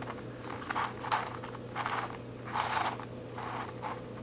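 Plastic layers of a six-layer Royal Pyraminx twisty puzzle being turned by hand: a series of about six short plastic scrapes and clicks as the pieces slide past each other.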